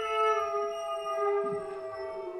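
A contemporary chamber ensemble holds several sustained tones that slowly slide down in pitch together, giving a howl-like glissando. The tones carry the ringing left by struck notes just before.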